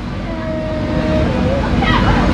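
A child's voice, quiet and hesitant: a drawn-out murmur, then a few wavering sounds near the end. Under it runs a steady low rumble of background noise.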